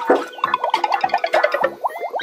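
Playful background music: a fast run of short plucked notes, many of them sliding upward in pitch.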